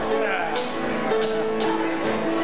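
Live band music with strummed guitars keeping a steady rhythm and held notes, with people talking over it.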